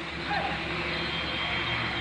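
Steady low machine hum under an even wash of outdoor background noise.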